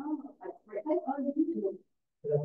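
Indistinct speech: a person's voice talking in short, mumbled phrases that stop just before the end.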